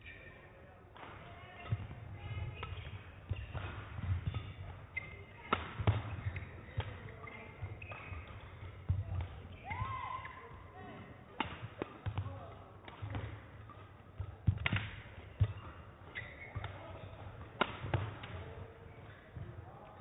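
Badminton rally in a large sports hall: rackets strike the shuttlecock with sharp cracks at irregular gaps of one to several seconds, over the thudding of the players' footwork on the court.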